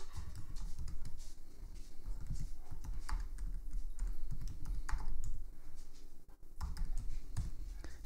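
Typing on a computer keyboard: a run of scattered, uneven keystrokes entering a short terminal command.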